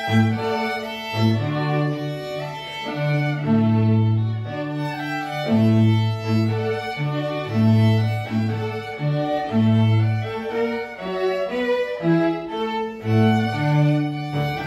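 A live string trio of violins and cello playing a classical piece. The cello sustains long low notes of about a second each under a bowed violin melody.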